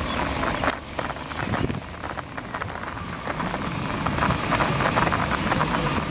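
Riding noise from a bicycle, picked up by a handlebar-mounted camera: wind on the microphone and tyre rumble over the road, with frequent small rattles and clicks from the bike and mount.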